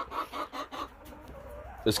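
Hens clucking in a coop, with several short clucks in the first second, then quieter.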